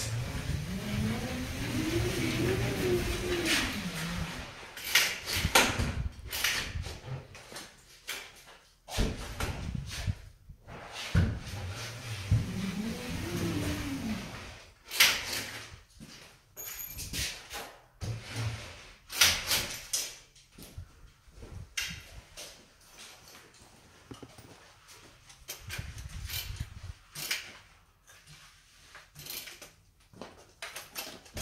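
TapePro automatic drywall taper (bazooka) worked along a corner joint: its wheel drive whirs, rising and then falling in pitch over a few seconds, twice, with a hiss as tape and mud feed out. Sharp clicks and clunks come between runs as the tape is cut and advanced.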